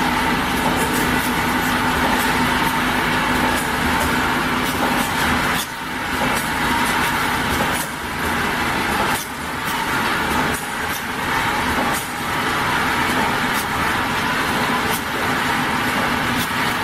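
Automatic bottle conveyor and labeling machine running: a steady mechanical hum with a faint constant tone and many light ticks throughout, dipping briefly a few times.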